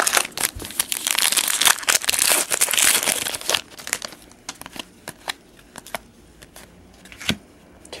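Trading-card pack wrapper crinkling and tearing open as a pack is opened, a dense crackling rustle for the first three and a half seconds, then scattered light rustles and a sharper click near the end.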